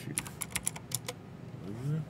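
Quick run of about eight keystrokes on a computer keyboard, typing in a ticker symbol. A short rising hum from a man's voice follows near the end.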